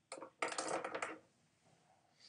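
A small hard object clattering on a hard surface: a brief knock, then a rattling clatter lasting under a second.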